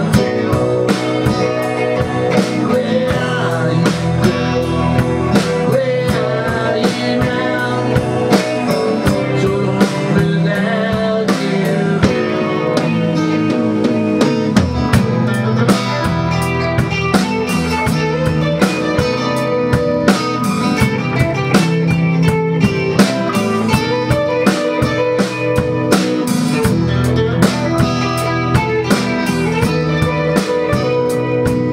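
Live band playing an instrumental passage: electric guitar and electric bass over a Ludwig drum kit keeping a steady beat.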